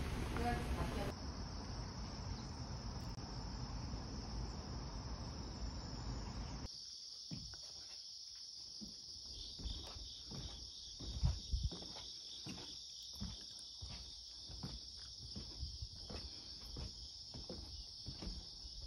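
Insects chirring in a steady high drone. For the first few seconds a low rumbling noise lies beneath it. After that come soft, irregular knocks and rustles.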